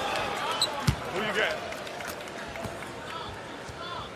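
A basketball thuds once on a hardwood court about a second in, as a made free throw drops through. Faint voices and arena murmur carry under it.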